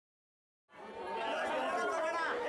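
Crowd of many people talking at once, an overlapping babble of voices. It fades in from silence about two-thirds of a second in.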